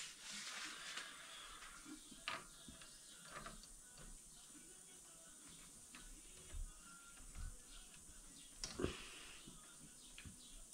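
Faint metallic clicks, taps and rubbing of a hand tool working the top cap of an upside-down motorcycle front fork leg, with a few sharper knocks spaced a second or more apart.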